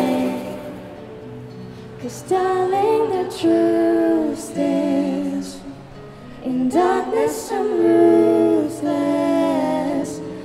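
A female voice sings held, sustained phrases over a strummed acoustic guitar. The playing is softer for a moment about a second in, then the voice returns.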